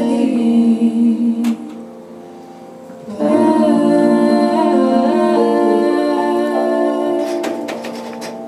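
A female jazz singer holds long wordless notes over piano chords and upright bass: a first phrase that fades after about two seconds, then a longer held chord from about three seconds in that slowly dies away, the song's closing bars.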